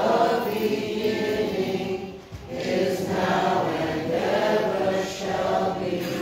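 A choir singing in long held phrases, with a short break between phrases a little over two seconds in.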